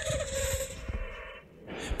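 A sustained soundtrack bed under a radio story, fading out about a second and a half in, followed by a brief rising swell near the end.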